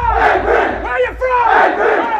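A team of football players shouting together in unison, a call-and-response chant answering the call "Where are you from?", with a brief break about a second in.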